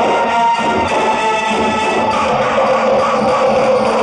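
Instrumental passage of a 1980s Hindi film song: sustained melody instruments over steady percussion, with no singing.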